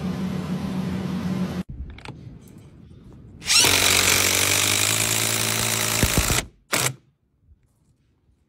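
A small power tool motor runs steadily and cuts off about one and a half seconds in. A DeWalt 20V brushless impact driver then drives a long wood screw into timber, running loudly for about three seconds, and ends with one short trigger blip.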